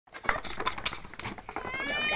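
Native chickens pecking feed from a tray: a rapid, irregular scatter of sharp beak taps. Near the end a high, drawn-out call starts, rising slightly in pitch.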